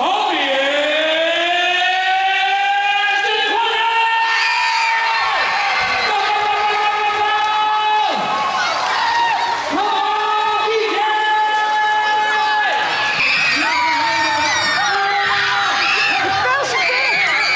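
A crowd of children cheering and screaming, with long, high screams held steady for a second or two at a time, over and over.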